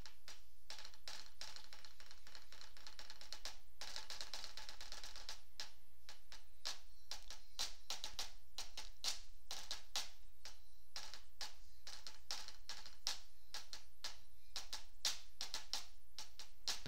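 Rapid, irregular clicking and tapping, several sharp clicks a second, over a steady low hum.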